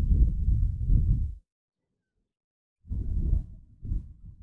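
Two bursts of low, muffled rumble on the microphone, the first about a second and a half long and the second starting near the three-second mark, each cutting off sharply.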